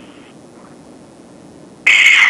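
Low steady hiss of an open phone line, then near the end a sudden loud, harsh burst as the caller's line comes back in, just before she answers.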